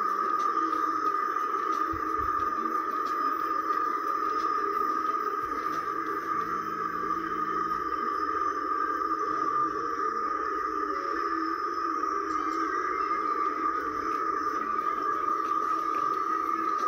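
Laptop speakers playing back the audio of the videos on screen: a steady, unchanging drone with one held high tone over a rougher low hum, with no beat or words.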